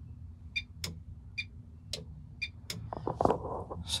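Electric dump valve on a turbocharged race car clicking on and off three times as its output is switched, a sharp ringing click followed by a softer one each time: the valve is actuating now that its broken feed wire has been repaired. A few rustling sounds follow near the end, over a steady low hum.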